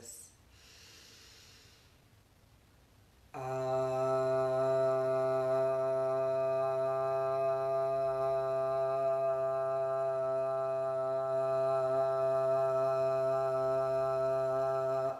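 A woman's voice chanting a long 'ah' of the Udgita (upward song) breath on one steady pitch, held for about twelve seconds. It begins about three seconds in, after a soft inhale.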